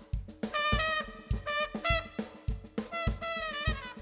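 Trumpet playing a melodic phrase of short separate notes over a steady kick-drum beat.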